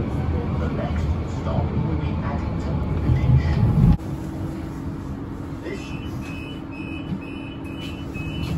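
Croydon Tramlink tram heard from inside the car: a loud low running rumble that cuts off suddenly about halfway through, then a steady hum. Near the end a run of evenly spaced high beeps starts up.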